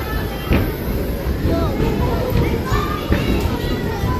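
Children's voices chattering and squealing with rising and falling pitch, over music and a steady low rumble from the spinning teacup ride.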